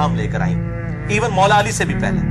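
A man's voice talking over a steady, low background music drone, with a dip in loudness about a second in.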